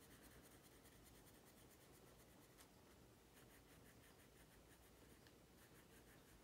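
Faint scratching of a coloured pencil shading in a small square on a paper tracker, in quick back-and-forth strokes.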